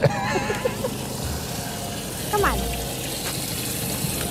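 Brief laughter, then a steady wash of lake water and wind around the fishing boat, with a short rising chirp near the middle.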